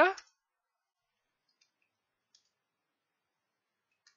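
A computer keyboard typed briefly: a few faint key clicks in near silence, about one and a half and two and a half seconds in.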